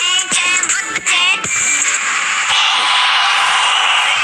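Electronic dance music from a mobile rhythm game, with high-pitched chopped synthetic vocal samples gliding up and down for the first second and a half. From about two and a half seconds in, a dense rushing noise layer joins the beat.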